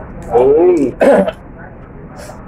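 A man's drawn-out vocal 'oh', its pitch rising and falling, followed about a second in by a short, sharp clearing of the throat.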